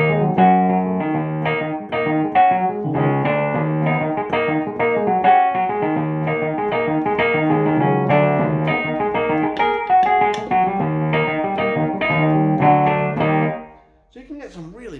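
Roland FP-30X digital piano played with both hands: a steady run of struck chords over held bass notes, stopping shortly before the end.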